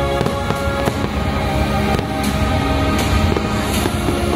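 Aerial fireworks bursting, several separate bangs, over loud music with steady sustained notes.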